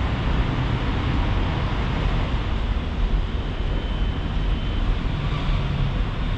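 Steady outdoor urban background noise, a constant low rumble with hiss and no distinct events, with a faint thin high tone for about a second in the middle.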